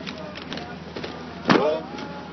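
Short gap in a military running cadence: faint voices of the group and a steady rushing movement noise, with a single sharp knock about one and a half seconds in.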